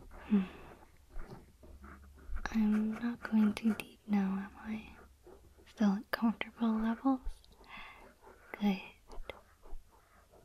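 A woman's soft voice, whispered and quietly voiced, in short phrases that come in two main runs through the middle, with shorter sounds near the start and end.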